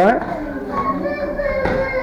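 Mostly voices: a drawn-out "eh" and low background talk, with no clear impact standing out.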